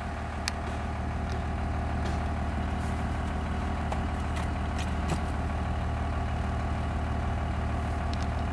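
Vehicle engine idling steadily, with a few faint clicks scattered through.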